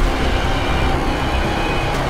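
Tense background score of sustained held tones, with a deep low rumble swelling in sharply at the start.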